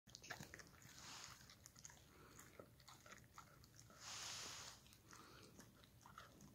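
Dog gnawing and chewing a strip of oven-baked liver: faint scattered clicks and crunches, with a brief louder rush of noise about four seconds in.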